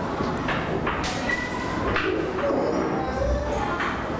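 Room background noise with a steady hiss and a few light knocks, and bird calls including a low cooing like a dove's near the end.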